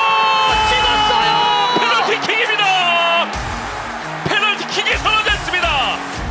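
A long, high shouted cry held for nearly two seconds, followed by shorter wavering yells, over music.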